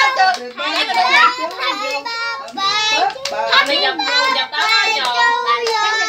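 Several young children's high voices calling out and singing together, with hand clapping.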